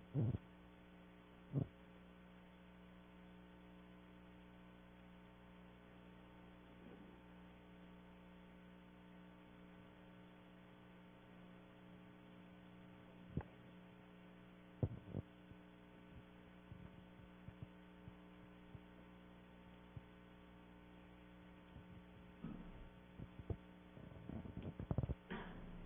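Faint, steady electrical mains hum with a few brief knocks: one about a second and a half in, and two more a little past the middle.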